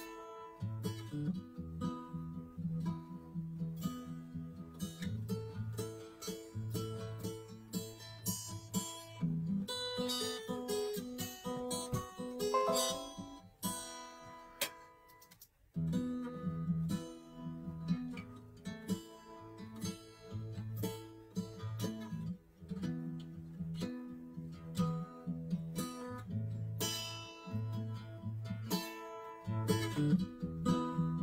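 Mixed guitar-led music played back over studio monitors, with a repeating bass line under plucked and strummed guitar. The music thins out a little past the middle and comes back in full at about sixteen seconds.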